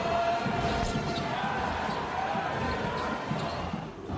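A basketball bouncing on a hardwood court during live play, with steady crowd noise from the arena behind it.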